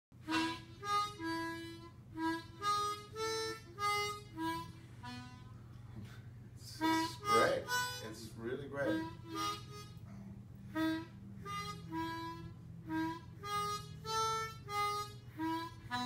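Diatonic blues harmonica (blues harp) played in short single notes, about two to three a second, in short phrases with a break in the middle.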